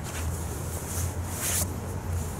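Jacket sleeves rustling and brushing against each other in short bursts as two men's forearms stay in contact during a chi sao / push-hands drill, over a steady low rumble.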